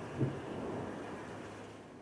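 Distant shelling over hills: a short low thud just after the start, then a rolling rumble that fades, mixed with outdoor wind noise.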